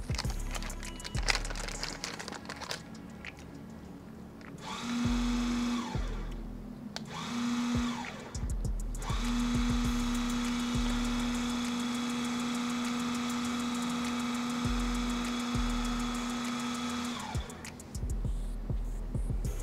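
A small electric motor runs three times: two short runs, then one of about eight seconds. Each run spins up and winds down. Before it, paper and a filter bag rustle and crinkle as they are handled.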